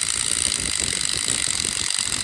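Milwaukee M18 cordless impact driver running steadily, its bit cutting into the hole of a hand-held metal mounting bracket with a harsh, grinding metal-on-metal hiss. The hole is being opened up so the bracket can sit over a rivet head.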